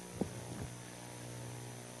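Low, steady electrical mains hum in the sound system, with a faint click about a quarter second in.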